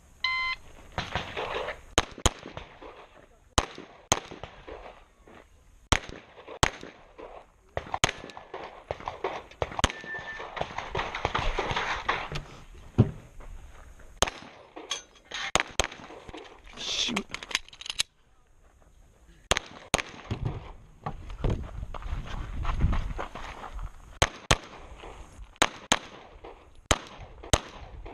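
An electronic shot timer's start beep, then semi-automatic pistol shots fired in quick pairs and short strings across a USPSA stage, with pauses and movement noise between the strings.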